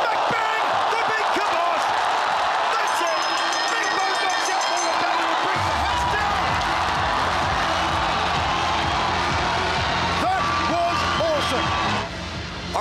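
Arena crowd cheering and shouting at a knockout, over a music track whose heavy bass comes in about halfway through.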